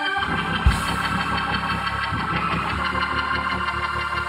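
Organ music with sustained chords over low bass notes, and a single sharp thump just under a second in.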